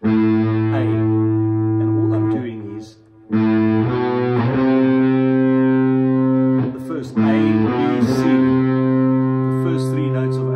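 Overdriven electric guitar, likely a PRS, playing a few long sustained notes from the A harmonic minor scale, each held for a second or more, with a short break about three seconds in. The raised seventh gives the scale its exotic sound.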